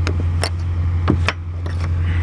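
A hammer knocking packed snow off a semi-trailer's rear lights and bumper: about four sharp knocks, two of them close together just after a second in, over a steady low drone.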